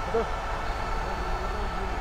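Steady low background noise with faint steady hums and no distinct events: the ambient noise of the commentary feed between words.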